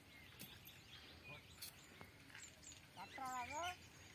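Faint open-field ambience with scattered small bird chirps, and a brief distant voice call lasting about half a second, a little after three seconds in.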